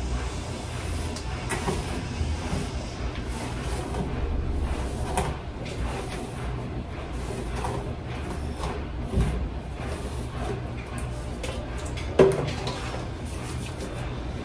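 Light rustling and scattered small clicks of hair being brushed and handled, over a steady low hum.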